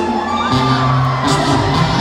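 A woman singing into a handheld microphone over amplified band music, with the crowd whooping, in the echo of a large hall.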